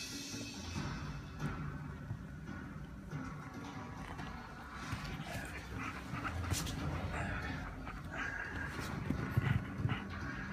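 Close-up dog sounds from a Yorkshire terrier puppy licking and mouthing a German Shepherd, with scattered short clicks, over television background music.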